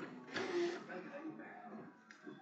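Quiet, indistinct men's voices talking at a distance, picked up by a security camera's microphone.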